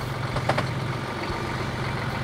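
Boat engine idling steadily with a low hum, and a brief sharp click about half a second in.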